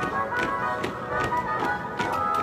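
March music: held wind notes over a steady, evenly spaced beat of about two and a half beats a second.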